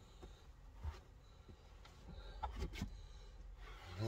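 Faint rubbing of a cloth wiped over a car's plastic centre console and handbrake gaiter, with a few soft knocks about a second in and again near three seconds.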